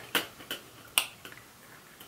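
Three sharp finger snaps in the first second, about half a second apart, as the speaker gropes for a forgotten word.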